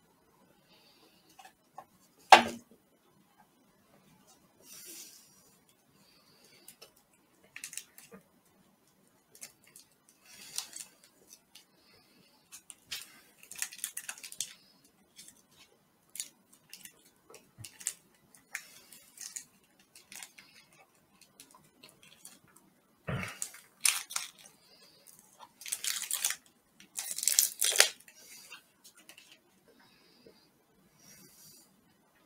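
Scattered handling noises of food and wrappers over a metal tray: light clicks, scrapes and rustling, with a sharp knock about two seconds in and another a little past twenty seconds, and a busier stretch of rustling near the end.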